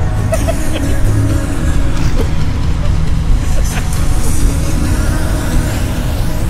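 Steady low rumble of a pickup truck driving, with road and wind noise, and a pop song playing faintly over it.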